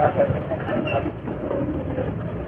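A few faint words in the first second over a steady hum of roadside traffic.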